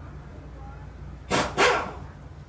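A dog barking twice in quick succession, short and loud, over a steady low hum of background traffic.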